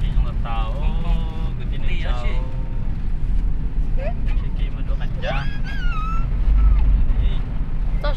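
Steady low rumble of a car's engine and tyres heard from inside the cabin while driving, with a person's voice coming in at times over it.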